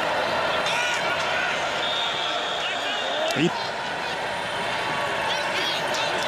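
Steady stadium ambience on a college football TV broadcast: an even wash of crowd and field noise, with faint distant voices heard through it.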